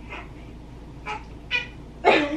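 A baby's short high-pitched squeals: a faint one at the start, then two louder ones about a second and a second and a half in.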